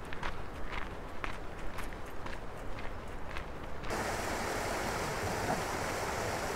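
Footsteps crunching on a gravel path for about four seconds, with some wind rumble on the microphone. Then, after an abrupt change, a small mountain stream rushing steadily over rocks.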